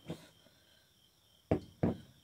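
Two short knocks about a third of a second apart, about one and a half seconds in: a glass canning jar knocking on the countertop as it is handled.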